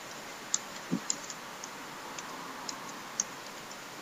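Computer keyboard typing: about ten separate keystrokes at an uneven pace, with a low thump about a second in, over a steady background hiss.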